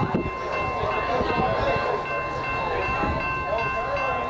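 Metra commuter train approaching the station. A steady chord of high tones holds throughout, over a low rumble and faint voices.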